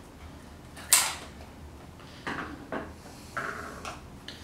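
Scissors cutting into a small cardboard pin box, with one sharp snip about a second in, then rustling of the box as it is handled near the end.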